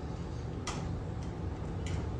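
Room tone in a pause between words: a steady low hum with two faint, sharp clicks, one a little before the middle and one near the end.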